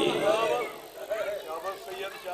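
A man's chanted recitation trailing off about half a second in, followed by faint, short voice sounds from the gathering.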